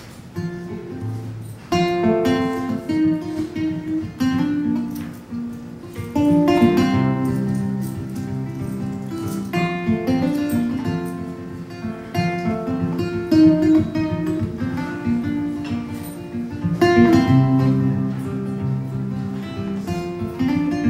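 Solo nylon-string classical guitar playing an instrumental intro of picked notes and chords, with no singing.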